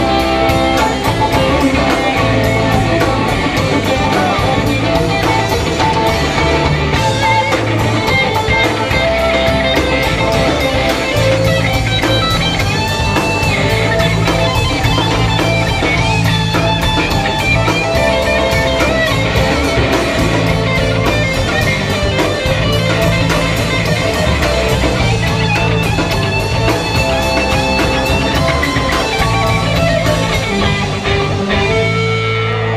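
Rock band playing an instrumental passage, electric guitar to the fore over bass, keyboards and drums with a steady, even cymbal beat.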